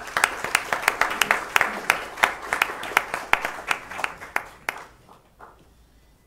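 Audience applauding: a dense patter of hand claps that thins out and stops about five seconds in.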